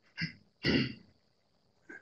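A man's short laugh in two quick bursts, the second louder, followed by a brief "yeah".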